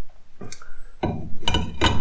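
Metal clicks and creaks from a motorcycle fork's inner tube being screwed into its fork foot with a clamping tool and bar: a single sharp click about half a second in, then a denser run of clicks and squeaky creaks in the second half.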